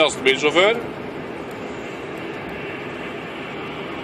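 Steady, even noise inside a Scania truck cab, following a short phrase of a man's voice near the start.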